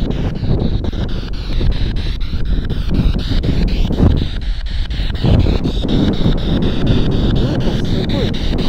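Spirit box scanning through radio frequencies: a continuous rush of radio static chopped into short, evenly spaced pieces several times a second, with wind noise on the microphone.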